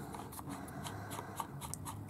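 Faint handling sounds, small ticks and rubbing, as fingers twist an Augvape Druga RDA on the 510 connector of a SMOK box mod.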